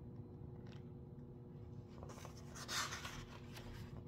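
A page of a paperback picture book being turned by hand: a soft paper rustle about halfway through, over a faint low steady hum.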